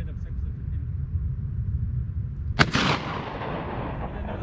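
A single gunshot from a long gun about two and a half seconds in, its report trailing off over about a second as it echoes off the valley walls.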